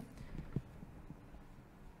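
Faint, dull taps and strokes of a marker on a whiteboard as lines are drawn, a few in the first second, over quiet room tone.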